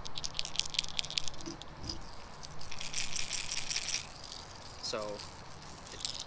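Internal rattles of two topwater popper lures, a Megabass Pop Max and a River2Sea Bubble Walker, shaken by hand to let their knock be heard: a fast run of clicking, a short pause, then a second run of clicking. The two lures have a different knock.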